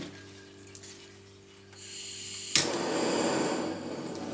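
Handheld butane torch being lit: a faint gas hiss starts, a sharp ignition click comes about two and a half seconds in, and the flame then runs with a steady rushing hiss. The torch is lit to pop the air bubbles rising in the wet acrylic paint.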